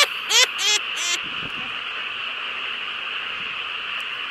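A person laughs in a few short, high, wavering bursts during the first second or so. After that a steady high-pitched hiss holds at an even level.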